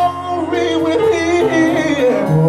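Live gospel singing: a male lead vocalist sings quick, wavering melodic runs into a microphone, over a steady low instrumental note and backing voices of the choir.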